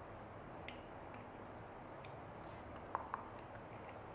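Small metal clicks of a key and padlock being handled: a single click just under a second in and a couple of quick clicks about three seconds in, over a steady background hiss.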